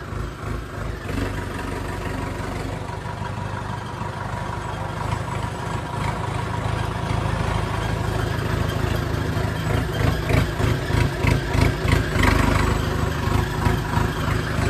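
Tractor diesel engine running as it is driven, a steady low throb that grows louder from about halfway, with the revs rising and falling near the end.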